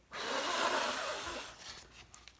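A person blowing one long puff of air across wet acrylic paint to push it out over the tray. It starts suddenly and dies away after about a second and a half.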